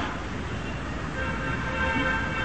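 Background noise of the lecture recording during a pause in speech: a steady hiss and low hum, with a faint steady tone of several pitches coming in a little over a second in.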